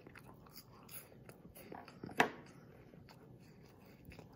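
Biting into and chewing a Kit Kat wafer bar with small crunches, one sharper crunch about two seconds in.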